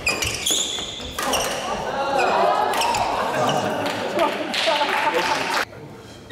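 Badminton rally on a wooden court: sharp racket strikes on the shuttlecock and footfalls in the first second, then voices shouting and exclaiming for several seconds once the point ends, cut off sharply near the end.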